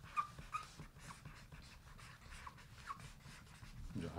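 Pens scratching on paper pads in quick short strokes, with a few brief squeaks from the pen tips; faint.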